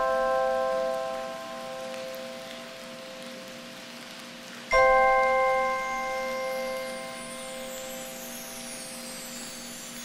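Instrumental lullaby music in a sparse passage of bell-like tones. A sustained chord fades out, then a second chord is struck about five seconds in and rings out slowly.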